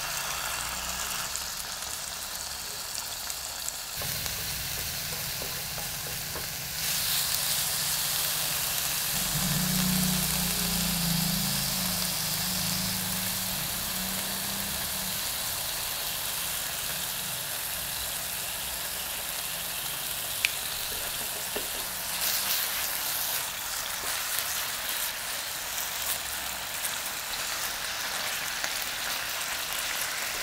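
Food frying in oil in a hot pan: a steady sizzle that grows louder about seven seconds in, with a single sharp tap about two-thirds of the way through.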